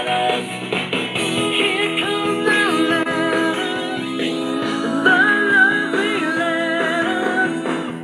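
A song with guitar playing through the small built-in Bluetooth speaker of a Smart Music Flower Pot, sounding like a pretty inexpensive Bluetooth speaker.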